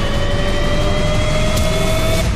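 Dramatic soundtrack sound effect: a deep rumble under a slowly rising tonal whine, building steadily.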